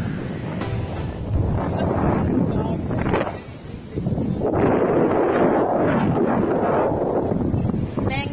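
Wind buffeting a handheld camera's microphone in loud, uneven gusts, easing briefly about three and a half seconds in, with waves breaking underneath.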